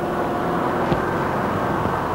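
A car driving at a steady speed: an even engine hum with road noise.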